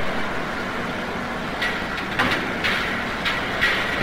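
Steady hiss and low hum of an old film soundtrack, with a few faint clicks.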